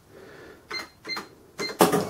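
Sam4S NR-510R cash register keys beeping three times as an amount is keyed in. Near the end the sale is cashed off and a loud mechanical noise starts as the receipt printer runs.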